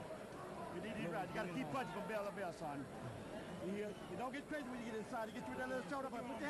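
Boxing cornermen talking to their fighter on the stool between rounds, several men's voices heard faintly over steady arena crowd noise.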